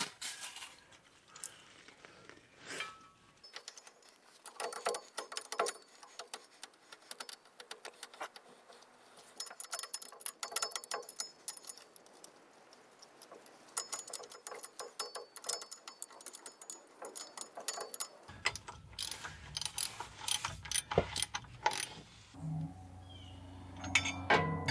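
Irregular metal clicks and clinks from hand tools as the driveshaft's universal joint is bolted back onto the truck's rear axle yoke. It comes in bursts of quicker clicking, like a wrench ratcheting, with short pauses between.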